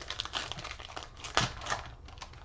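Foil trading-card pack being torn open, its wrapper crinkling and crackling, with a sharper snap about one and a half seconds in.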